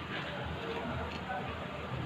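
Indistinct voices in the background over a steady low room noise.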